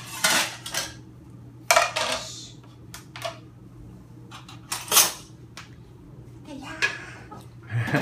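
Kitchenware clattering as dishes and a frying pan with its lid are handled at a dish rack: a string of sharp clanks and knocks, the loudest about two seconds in and again near the middle, over a faint low steady hum.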